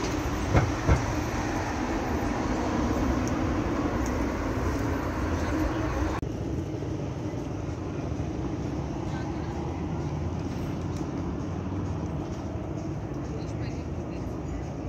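Busy city street ambience: a steady rumble of traffic with two short thumps about half a second in. About six seconds in it cuts off abruptly to a quieter, thinner outdoor city background.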